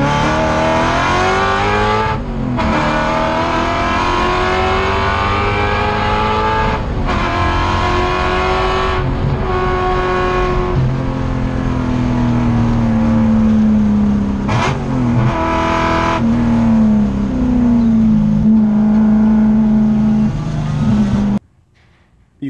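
Ford 5.0 L V8 in a BMW E36 race car, heard from inside the cabin at full throttle on track. It runs through custom equal-length headers that pair the inner and outer cylinders of each bank into two-into-one collectors. The engine note climbs in pitch, broken by several brief dips at gear changes, and the sound cuts off abruptly near the end.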